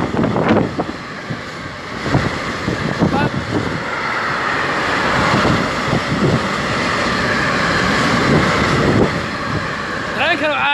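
Freight train of tank wagons passing, a steady rushing rail noise that grows louder over several seconds and peaks near the end, with wind buffeting the microphone.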